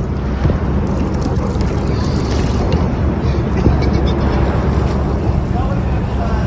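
Outdoor ambience recorded on a phone in a kayak on a river: a steady low rumble of wind on the microphone over water noise, with faint voices.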